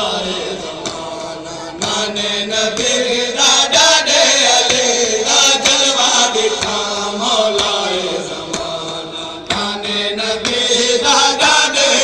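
Men chanting a noha, a Shia lament, in a sung call-and-response style, with sharp slaps of chest-beating (matam) from the crowd that come thickest in the middle and near the end.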